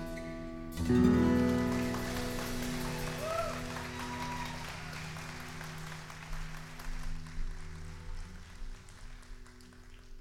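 A live band's song ends on a loud final chord about a second in, with acoustic guitar, that rings out and slowly fades. An audience applauds over it, and the clapping dies away near the end.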